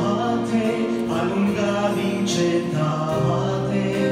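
A man singing a slow Christian worship song into a handheld microphone, amplified through the sound system, over musical accompaniment.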